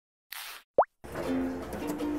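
Logo sound effect: a short whoosh followed by a quick, sharp rising "bloop", then light background music with held notes starts about a second in.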